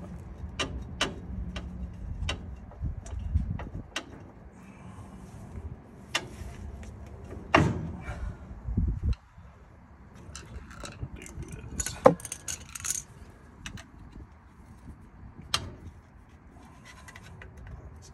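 Scattered metal clicks and clinks of hand tools and a steel brake drum being handled at a car's front wheel hub, with a few louder knocks spread through.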